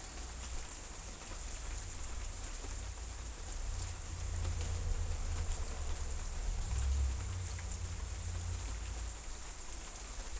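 Steady patter of rain, with a low rumble underneath that swells and fades around the middle.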